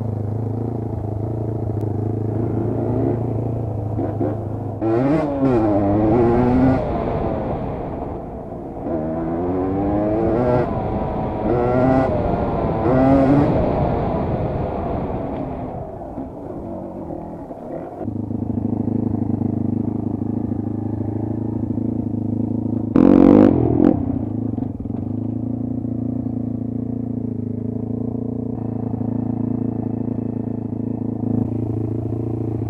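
Dirt bike engine heard up close from the rider's camera, revving up and down in repeated rising and falling sweeps while riding, then settling to a steady idle about two-thirds of the way in. A brief loud burst, the loudest sound, breaks in near the three-quarter mark.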